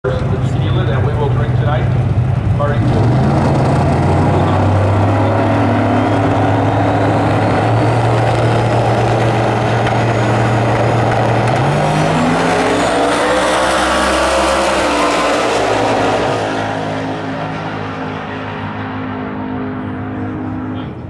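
Turbocharged drag radial race cars holding high revs at the starting line, then launching about twelve seconds in with a jump in engine pitch. The engines rise through the gears and fade as the cars run away down the strip.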